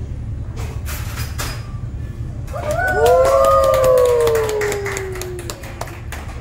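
Several people give a long drawn-out "woooo" together, starting about halfway through and lasting a few seconds, each voice sliding slowly down in pitch. Under it runs a steady low hum, with scattered light clicks of tableware.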